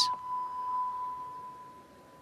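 A single steady electronic beep held on one tone and fading out over about two seconds. It is the balance beam time-warning signal, which sounds as the routine nears its time limit.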